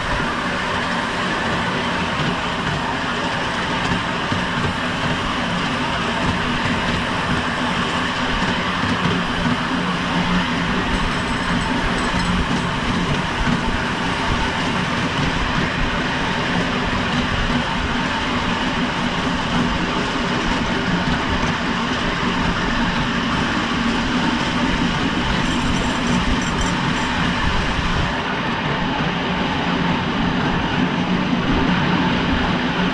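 Miniature ride-on railway train running along its track, heard from on board: a steady running noise of the wheels on the rails that keeps up without a break.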